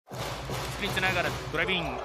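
A basketball being dribbled on a hardwood arena court, with a few bounces under a commentator's voice.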